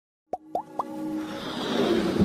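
Animated logo intro sting: three quick rising plops about a quarter second apart, then a synth swell that builds in loudness.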